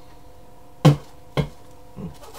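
A man coughing twice, two short sharp coughs about half a second apart, the first the louder.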